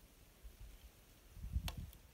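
Faint low rumbling with a single short, sharp click about one and a half seconds in.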